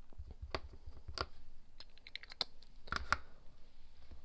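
Small plastic ink pad dabbed against a rubber stamp mounted on a clear acrylic block: light plastic taps and clicks, a few single ones, then a quick run in the middle and two sharper clicks near the end.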